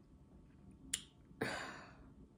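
A pause with a single sharp click about a second in, followed by a short breathy rush of air.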